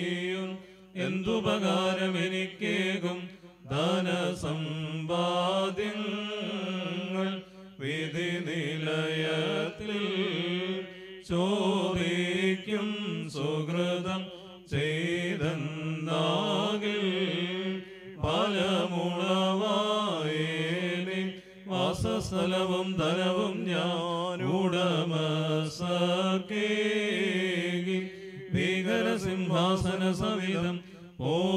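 Syrian Christian priests chanting a funeral hymn into a microphone. The melodic male vocal line comes in phrases of a few seconds, with short breaks between them.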